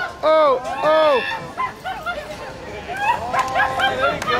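A run of short, high-pitched yelps, each rising and falling in pitch, loudest in the first second and then trailing off into fainter, scattered ones.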